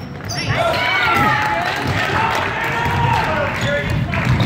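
Indoor basketball game sounds: sneakers squeaking on the hardwood gym floor and a basketball bouncing, over spectators' voices and shouts that grow louder about half a second in.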